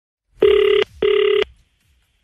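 Telephone ringback tone heard down the line: one double ring, two short steady rings close together. It means the number being called is ringing and has not yet been answered.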